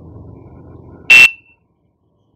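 A single short, loud electronic beep from a buzzer, one steady high tone, about a second in.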